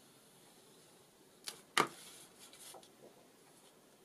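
Paper and card being handled and laid down on a work table: a quick swish, then a sharp slap about two seconds in, followed by about a second of light rustling.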